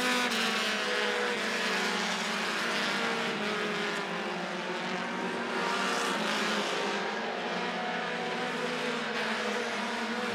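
Several four-cylinder short-track stock cars running laps at race speed, their engines blending into a steady drone whose pitches drift gently up and down as the cars move through the turns and down the straights.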